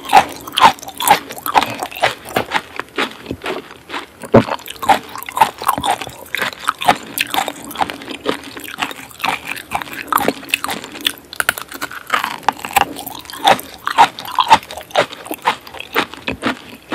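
Close-miked chewing and biting of coconut palm weevil larvae (coconut worms) dressed in fish sauce: wet mouth noises with quick sharp clicks several times a second.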